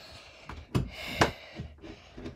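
Rustling, with two short light knocks about a second apart, as things are handled while something is being closed up.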